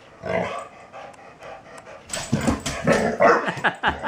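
Young dog barking and growling in play at a cat: one burst a fraction of a second in, then from about two seconds a rapid run of short yips and barks that fall in pitch.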